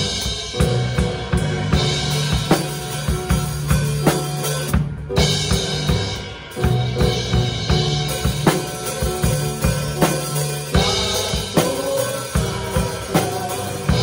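Drum kit played with sticks in a live worship band: steady snare and bass-drum hits and Sabian AAX cymbals over sustained bass and keyboard-like notes, with a short stop about five seconds in.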